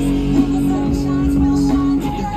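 Live amplified music from a small stage band with guitar and keyboard, playing through PA speakers; one long note is held.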